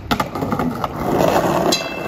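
Skateboard on a concrete ledge: several sharp clacks of the board striking the ledge just after the start, then a rough, steady scraping and rolling noise as it slides and rides away. A brief high-pitched squeal comes near the end.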